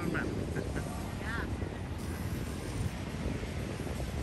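Steady low outdoor rumble, with a couple of faint short high calls about a second in.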